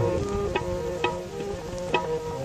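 Instrumental break in a Saraiki folk song: a reedy melody of held, stepping notes over hand-drum strokes about twice a second.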